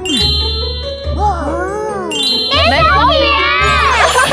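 Two bright ding-like chime sound effects, one just after the start and another about halfway through, over background music. In the second half, children's voices shriek with a wavering pitch.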